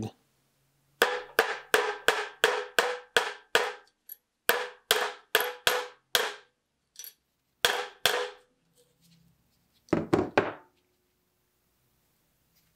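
Hammer striking a small flat steel knife guard laid on the anvil of a bench vise: runs of sharp, ringing metal blows at about four a second with short pauses, then a last quick cluster of knocks near the end.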